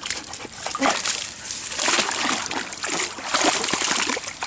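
Chocolate Labrador retriever splashing as it wades into a river, irregular splashes of water throughout.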